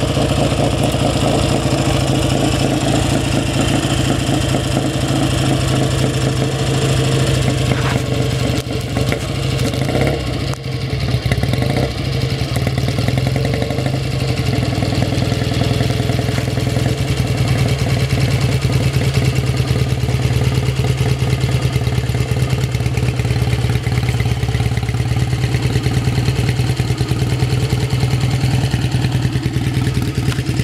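BSA A10 650 cc parallel-twin motorcycle engine running through swept-back pipes and Goldie-style mufflers, pulling slowly up to a stop and then idling steadily, with a brief dip about ten seconds in. It is running reasonably well.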